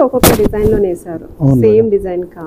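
A single sharp snap of heavy silk cloth as a Kanchipuram silk saree is flicked open through the air, a fraction of a second in.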